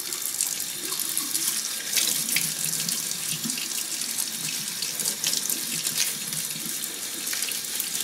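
Tap water running steadily into a sink and splashing over the metal halves of an N scale locomotive chassis as they are scrubbed with a toothbrush, with a few small ticks of brush and metal.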